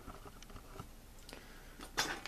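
Quiet room tone with a few faint, scattered clicks and rustles of charging leads being handled on a bench.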